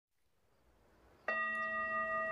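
Hand-held metal singing bowl struck once with a mallet about a second in, then ringing on with several steady tones sounding together.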